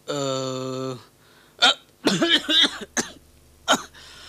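A person's voice: a drawn-out, steady-pitched "aah" lasting about a second, then coughing and short strained vocal sounds.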